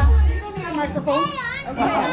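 Children's voices chattering, with one high, wavering squeal a little past the middle, over music whose bass stops about half a second in.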